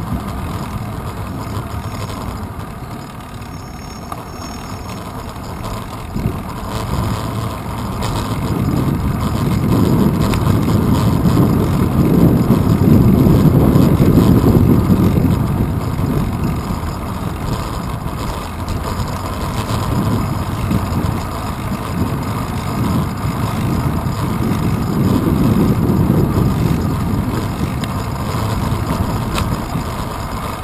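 Wind and road rumble picked up by a handlebar-mounted action camera on a moving bicycle: a steady low rushing noise that swells louder twice, once in the middle and again near the end.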